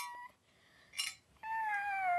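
A cat meowing: one long, drawn-out meow that starts about a second and a half in and slowly falls in pitch, after a short rustle just before it.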